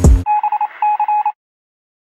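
A drum-backed music track cuts off abruptly and is followed by about a second of telephone-style electronic beeping: a single thin tone pulsing rapidly in two short groups. Silence follows.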